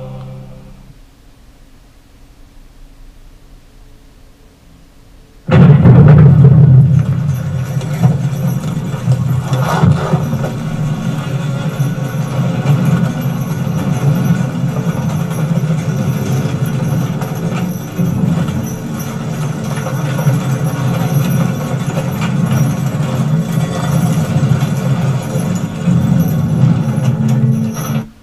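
A TV drama's soundtrack playing through speakers: faint for the first five seconds or so, then a sudden loud, deep rumble with drum-like hits that carries on steadily.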